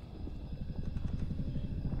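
A low, rapidly pulsing rumble from the animated film's soundtrack, swelling steadily louder.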